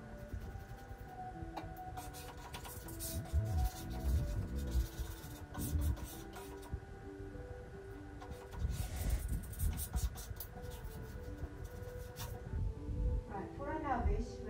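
Background music with a simple melody over irregular scraping and rubbing: a plastic kitchen spatula is being worked across self-adhesive window film to smooth it against the glass.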